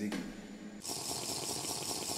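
A person sipping and slurping a drink from a small cup: a noisy, rattly slurp that turns hissier about a second in.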